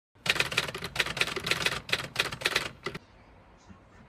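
Typewriter-style typing sound effect: a rapid run of sharp keystroke clicks, about five or six a second, stopping about three seconds in.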